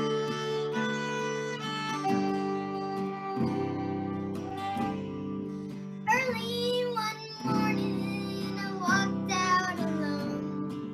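A fiddle plays the melody over a strummed acoustic guitar and bass. About six seconds in, the fiddle stops and a young girl starts singing the song's first line over the guitar.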